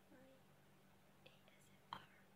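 Near silence with a woman's faint ASMR-style whispering and mouth clicks: a soft voice sound near the start, small clicks past the middle, and a sharper click just before the end, over a faint steady hum.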